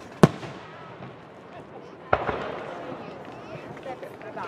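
Aerial fireworks exploding: a sharp bang about a quarter second in, then a second bang about two seconds in whose sound trails off over about a second. Spectators chatter underneath.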